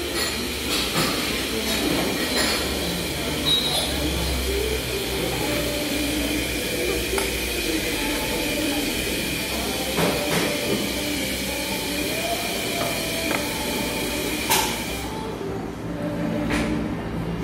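Café background noise: a steady high machine whine over a low hum, with cutlery and glasses clinking now and then. The whine stops about a second before the end.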